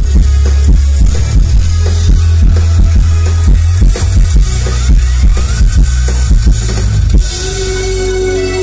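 Live rock band amplified through a PA: drum kit, bass and electric guitars playing loud and dense. About seven seconds in the drum hits stop and a sustained held note carries on.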